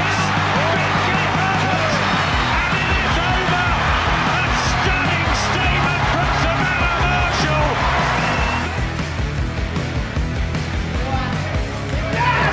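Background music with a steady bass line, with voices mixed in; it gets a little quieter in the last few seconds.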